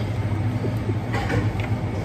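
A steady low mechanical hum, with a few faint light taps about a second in.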